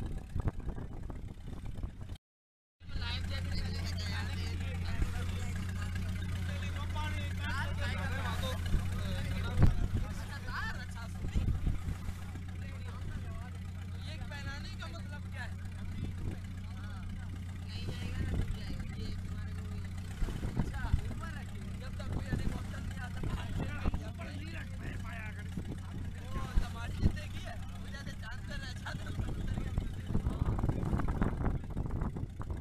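A motor engine running steadily with a low hum, under people talking. The sound drops out briefly about two seconds in, and the hum grows fainter in the second half.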